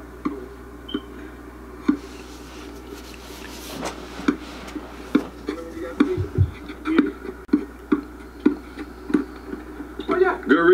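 Basketball being dribbled on an outdoor hard court: a few scattered bounces, then a steady run of short bounces about two or three a second in the second half, with faint voices.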